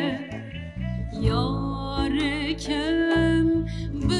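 A woman sings a Kurdish song with an ornamented, wavering vibrato, accompanied by acoustic guitar.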